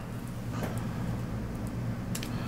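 Steady low hum with a faint hiss, with a few faint, short ticks.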